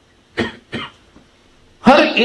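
A man coughing twice, two short coughs about a third of a second apart.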